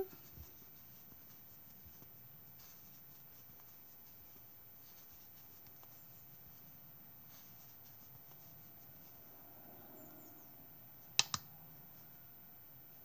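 Faint scratchy rustling of yarn being worked with a crochet hook, coming and going softly. About eleven seconds in, two sharp clicks a fraction of a second apart stand out as the loudest sounds.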